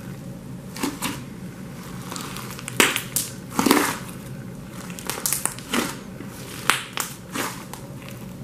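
Thick slime mixed with iridescent glitter flakes, squeezed and poked by hand, giving irregular short squishing crackles. The loudest come about three to four seconds in.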